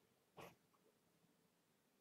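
Near silence: faint room tone, with one brief soft noise less than half a second in.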